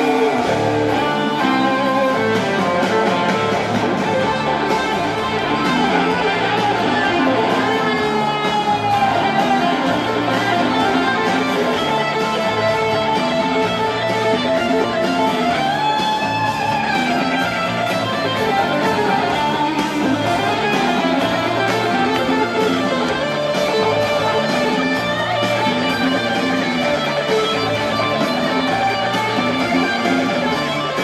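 Live rock band playing an instrumental passage with no vocals. An electric guitar plays lead with bent notes over acoustic guitar, bass and drums.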